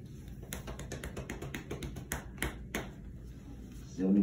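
Light, irregular clicks and taps of a dog's collar band and harness being handled and fastened around its neck, with a few sharper clicks a little past the middle.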